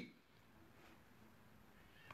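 Near silence: room tone during a pause in speech.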